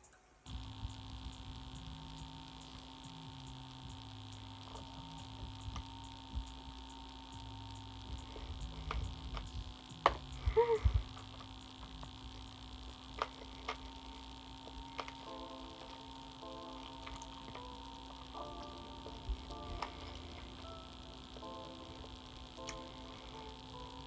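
A steady electrical hum runs under faint background music: low stepped notes at first, then a higher melody from about fifteen seconds in. A few short clicks of handling and eating sound through it, the loudest around ten seconds in.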